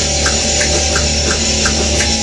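Electric guitar playing heavy rock, a low note held through, over a steady ticking beat about three times a second.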